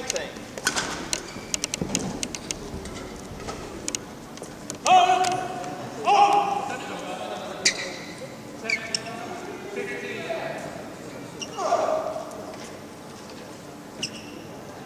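Large sports hall between badminton rallies: scattered knocks and short squeaks in the first few seconds, then several short, loud calls, the loudest about five and six seconds in.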